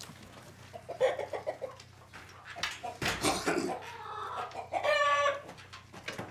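Domestic chickens clucking inside a henhouse, with one bird giving a loud, held call about five seconds in. A man coughs about a second in.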